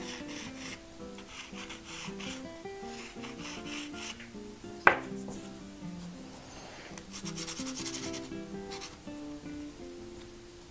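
Soft pastel stick scratching across paper in repeated short rubbing strokes, over background music. A single sharp click about five seconds in is the loudest sound.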